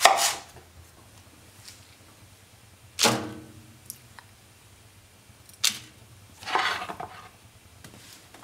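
A kitchen knife chops through a leek onto a wooden cutting board at the very start, followed by a few separate knocks, one about three seconds in with a short ring, and a rustle near the end as leek rounds are handled and set onto a parchment-lined baking tray.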